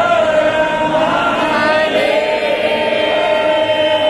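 Devotional Hindu chant sung by a group of voices, with one long held note running beneath the bending melody.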